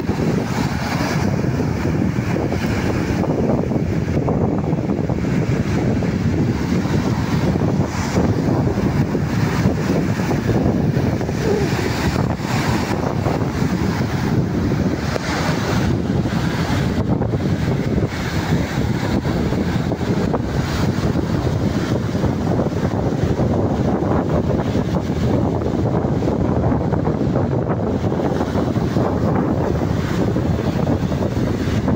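Sea surf breaking and washing up onto a sandy beach, a steady rush of water with wind buffeting the microphone.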